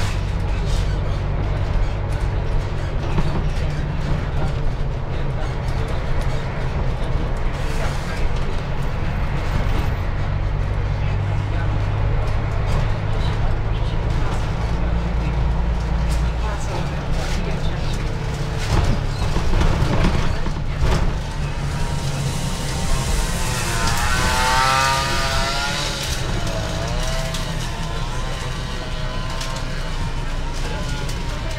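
Mercedes-Benz Citaro city bus running, heard from inside the cabin: a steady low engine drone whose lowest note drops a little past the middle. Near the end a person's voice with a wavering pitch rises over it.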